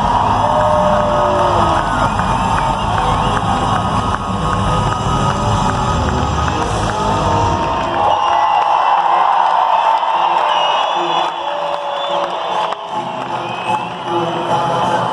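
Live band music in an arena with the crowd cheering and whooping close by. About eight seconds in the band's bass and drums drop out and the crowd's cheers and whoops carry on.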